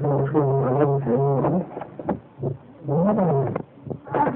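A man's voice in Arabic, drawn out and droning, with long held low notes, in three stretches with short pauses between them.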